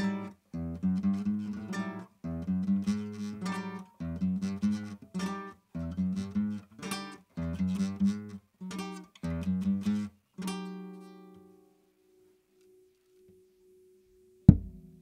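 Improvised guitar playing: rhythmic strummed chords in short phrases, each stopped abruptly. About ten seconds in, a last chord is left to ring and fade out, and the rest is near silence.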